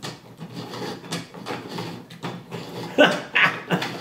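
3D-printed plastic gears (spur, helical and herringbone) being turned by hand, their teeth meshing with a light irregular clicking and rattling. A man laughs briefly near the end.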